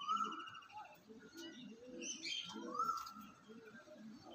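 Domestic Andhra pigeons cooing in low, pulsing phrases, with faint high chirping and trilling from other small birds.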